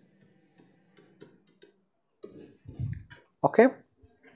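Faint, scattered clicks and taps of a stylus writing on a pen tablet. About two seconds in comes a short low rumble, and a spoken word near the end.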